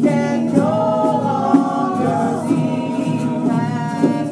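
A group of voices singing a song together, the melody moving in held, gliding notes.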